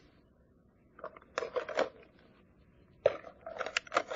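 Brief rustling and handling noises at a wooden lectern, papers and a Bible being looked through. There is a cluster of short sharp sounds about a second in and another from about three seconds on, with near silence between.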